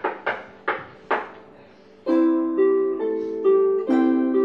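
Harp duet on a pedal harp and a lever harp: a few short, dry, knock-like strokes that die away at once, then about two seconds in, ringing plucked notes and chords that sustain and overlap.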